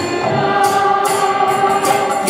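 Kirtan: a group of voices chanting together in long held notes over a harmonium, with hand cymbals struck about once a second.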